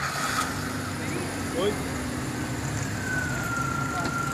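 Car engines idling with a steady low hum, faint voices in the background, and a thin, steady high tone that comes in about three seconds in.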